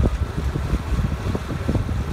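Wind buffeting the microphone aboard a moving lake boat, an uneven, gusty rumble.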